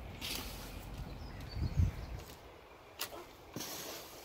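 Faint low rumble with a few soft knocks and short clicks: gloved hands handling loose compost potting mix in a plastic trug.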